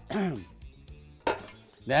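A man's voice speaking briefly at the start and again at the end, over soft background music, with faint clinks of kitchen utensils against a pan.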